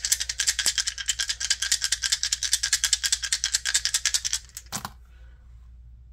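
A set of astrology dice shaken in cupped hands, a rapid, steady clicking rattle that lasts about four seconds. The dice are then tossed onto the card spread just before the five-second mark and land with a brief clatter, followed by a few faint soft touches.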